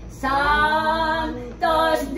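Women singing a novena hymn in Yogad together, unaccompanied, in long held notes that glide between pitches. A new phrase starts just after the beginning, and another after a short breath near the end.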